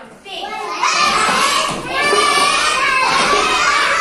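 A group of young children's voices calling out together, loud from about a second in.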